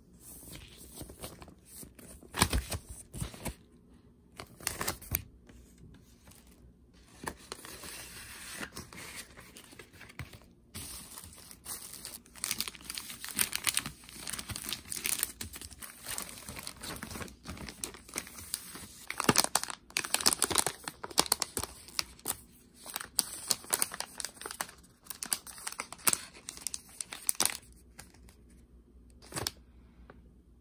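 Plastic packaging crinkling and rustling in the hands: a vinyl record's plastic sleeve and then a packet of gummies being handled, in irregular bursts with short quiet gaps.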